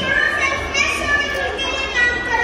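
Children's high-pitched voices calling out and talking over one another.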